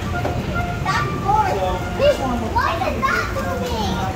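Children's voices chattering and calling out, high-pitched and indistinct, over a steady low hum.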